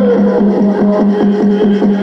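Peyote song: a water drum beating fast and even, about six or seven beats a second, on one steady low pitch, with men's voices singing over it.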